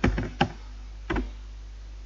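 A few computer keyboard keystrokes, unevenly spaced, the loudest about half a second in and a last one a little after a second, over a faint steady low hum.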